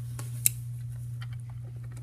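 Steady low hum in a small room, with one sharp click about half a second in and a few faint ticks.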